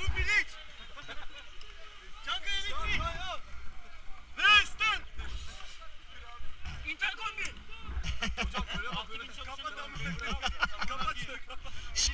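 Rafters' voices calling and shouting in short bursts, over river water and a low, uneven rumble on the microphone.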